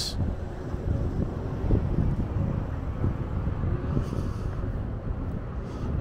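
Wind buffeting the microphone outdoors, a low irregular rumble, with faint traffic-like background noise.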